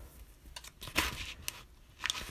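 A paper sticker being pressed and rubbed down onto a planner page: soft paper rustling with a few light clicks, the sharpest about a second in.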